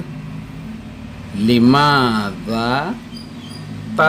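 A man's voice saying a short Arabic phrase over a steady low hum.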